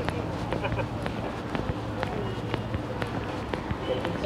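Footsteps on stone paving, about two steps a second, over the background of people talking in an open street.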